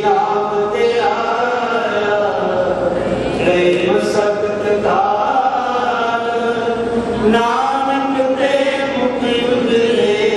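Sikh kirtan: several male voices sing a hymn together in long, gliding held notes over a harmonium.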